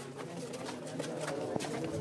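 Pigeons cooing in steady, held notes, with scattered rustles and knocks as the phone brushes against clothing in a moving crowd.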